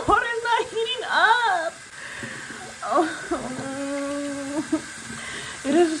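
A woman's wordless vocal sounds: short rising-and-falling whimpers, then one long held moan from about three seconds in, over a faint steady hiss. She is reacting to cold water that will not heat up.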